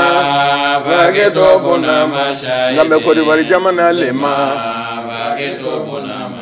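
A man's voice chanting in long, held melodic lines, sliding between sustained notes. It grows a little quieter in the last two seconds.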